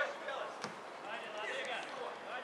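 Voices on and around a football pitch, with a single sharp thud of a football being kicked about two thirds of a second in.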